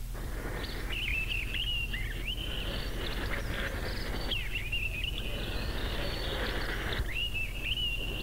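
Birdsong over a steady outdoor background hiss: a bird sings bouts of quick, twittering chirp phrases, with short gaps between them.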